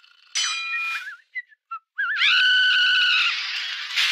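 High-pitched cartoon whistle sounds: a held whistled tone ending in a warble, a few short chirps, then a louder held tone about a second long that wobbles at its start.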